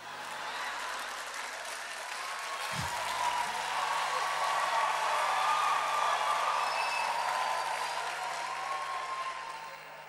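A large audience applauding and laughing after a punchline, swelling to a peak midway and dying away near the end.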